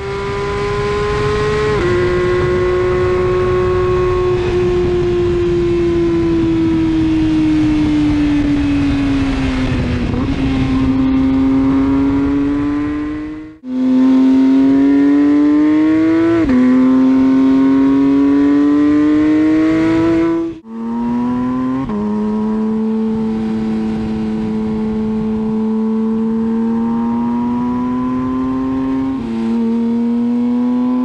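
2023 Porsche 911 GT3 RS's 4.0-litre naturally aspirated flat-six running hard at high revs. The pitch climbs and sags with the throttle, and drops suddenly at the dual-clutch gearchanges, about three times. The sound cuts out briefly twice.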